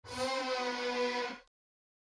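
An opening sting: one sustained, bright pitched note held for about a second and a half, then cut off abruptly.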